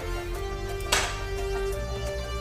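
Drum and bass mix playing back: held synth melody notes over a pulsing bass line, with one sharp crash-like hit about a second in.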